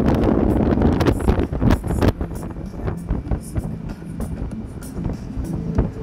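Wind rushing over a touring motorcycle at highway speed, loud at first and easing over the first couple of seconds, with music with a steady beat playing underneath.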